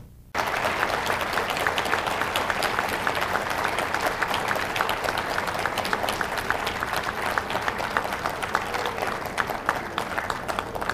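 Audience applauding, a dense steady patter of many hands clapping, after a brief drop in the sound at the very start.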